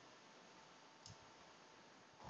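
A single computer mouse click about a second in, over faint steady hiss at near silence.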